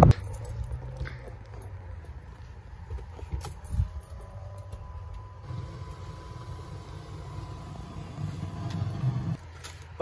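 A car's low, steady rumble, fairly quiet, with a single knock about four seconds in.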